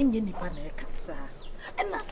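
Chickens clucking in short, choppy calls, over a person's voice.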